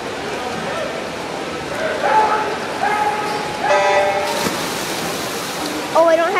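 Crowd voices echo around an indoor pool. About four seconds in, a sharp start signal sounds as the backstroke swimmers push off the wall, followed by a steady rush of splashing.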